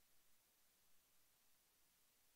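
Near silence: a faint, steady hiss with no distinct sounds.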